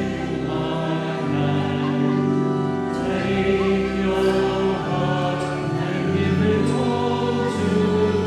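A choir singing a hymn in sustained, steady notes: the recessional hymn at the close of Mass.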